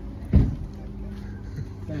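A steady low hum, with one sudden loud thump about a third of a second in.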